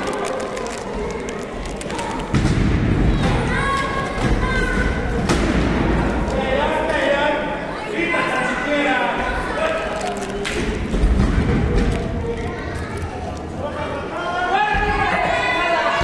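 Wrestlers hitting the ring canvas: repeated heavy thuds of the ring mat, starting about two seconds in, with voices shouting throughout in a large hall.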